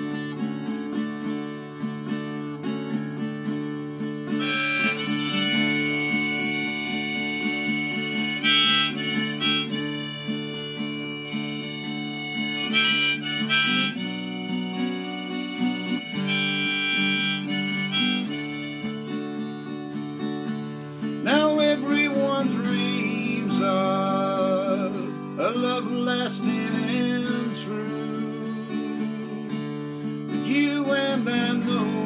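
A harmonica played in a neck rack takes an instrumental solo over a strummed steel-string acoustic guitar. It holds long high notes through the first half, drops out for a moment a little past halfway, then returns with wavering, bending notes as the guitar keeps strumming.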